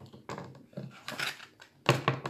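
Plastic-cased ink pad dabbed against a rubber stamp several times to ink it, a series of soft taps and scuffs with a sharp knock near the end.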